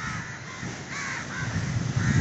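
Crows cawing, about four short caws spread across two seconds, over a low rumble of wind on the microphone.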